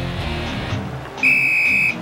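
Cartoon soundtrack music fading out, then a bright, steady high-pitched tone a little past a second in, lasting under a second and the loudest sound here.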